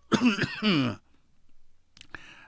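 A man clears his throat once, a voiced sound of about a second that falls in pitch, just after the start.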